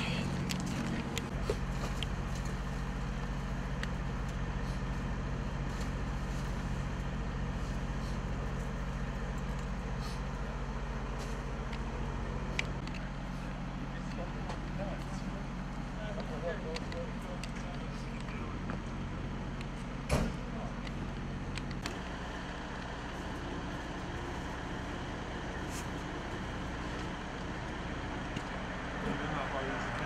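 A fire engine's diesel engine idling with a steady low hum, and one sharp knock about twenty seconds in.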